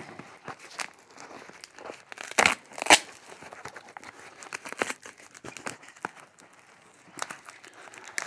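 Duct tape being peeled and torn off a tightly wrapped parcel: continuous crinkling and crackling of the tape, with sharper rips scattered through and two louder sharp sounds about two and a half and three seconds in.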